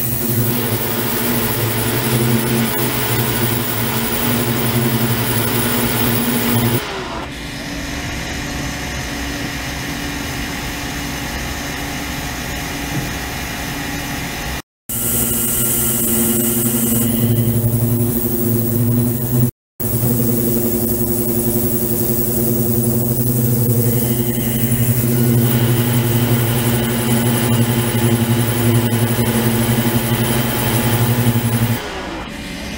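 Ultrasonic cleaning tank with its degassing and microbubble circulation pump running: a loud, steady hum of several held tones over a hiss. The tones bend down and the sound changes abruptly about seven seconds in. It cuts out twice briefly near the middle and comes back fuller.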